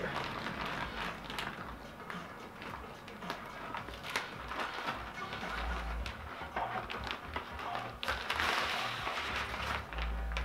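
Plastic wrapping rustling and crinkling as it is handled and pulled off a turntable, louder near the end, with a couple of dull handling thumps. Music plays underneath.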